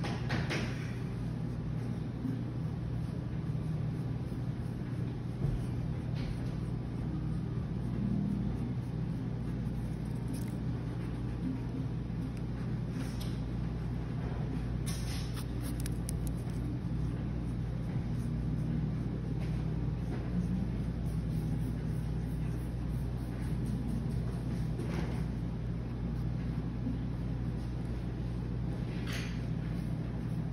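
Steady low hum of room machinery, with a few short scratches of a graphite pencil sketching on paper.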